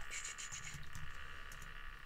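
A few faint keystrokes on a computer keyboard over a steady background hiss, in a quiet room.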